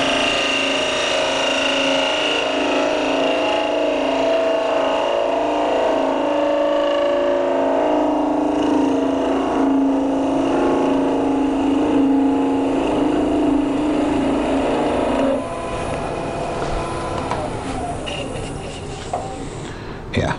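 Wood lathe running with a radius skew chisel taking a planing cut across the end face of a spinning dry oak blank: a steady hum under cutting noise. About fifteen seconds in, the sound drops to a quieter level.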